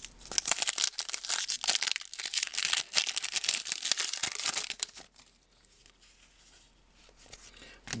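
Trading card pack wrapper being torn open and crinkled by hand, a dense crackling rustle for about five seconds that then stops.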